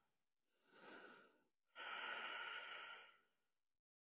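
A woman breathing audibly while holding a deep forward-curled stretch: a short faint breath about a second in, then a longer, louder breath lasting about a second.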